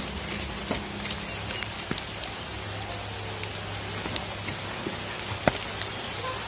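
Rain falling steadily, an even patter with scattered sharp drop ticks and one louder click about five and a half seconds in.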